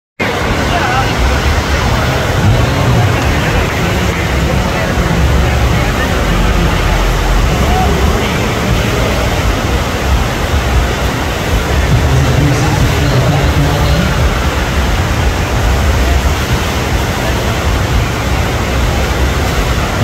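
Steady, loud rush of water from a double-jet FlowRider sheet-wave machine pumping a thin sheet of water up its padded slope, with a fluctuating low rumble underneath.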